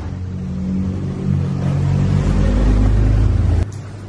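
A motor vehicle's engine rumbling close by on the street, growing louder through the middle, then cutting off suddenly near the end.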